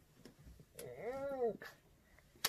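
A faint, short hummed vocal sound from a person, its pitch rising and then falling in one arch, about a second in, with a few small clicks around it.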